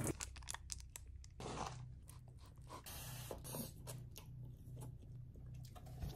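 A person quietly chewing a mouthful of instant stir-fried cup noodles, with a run of small, crunchy clicks.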